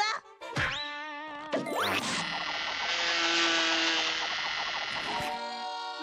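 Cartoon sound effects: a quick downward sweep and a rising boing-like glide, then about three seconds of dense buzzing that stops a little after five seconds in. The buzzing is the effect for a termite chewing rapidly through trees.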